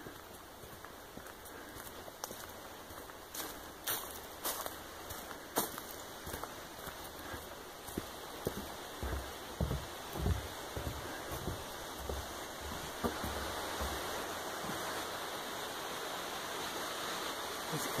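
Creek water rushing steadily below, growing gradually louder, with soft footsteps on the trail through the middle and a few sharp clicks a few seconds in.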